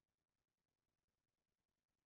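Near silence: the audio is gated to digital silence between phrases of speech.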